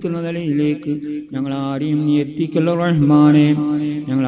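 A man's voice chanting a devotional prayer in long, drawn-out melodic phrases, with short breaths about a second in and again halfway through.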